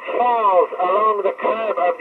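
An astronaut's voice coming down from the International Space Station over an FM radio link, heard through a Kenwood TS-2000 transceiver, explaining orbit. The speech sounds thin and narrow, with no bass and no top end.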